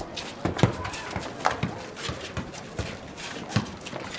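Footsteps of several people running and walking on a paved alley, heard as irregular thuds and scuffs, with faint voices of children playing.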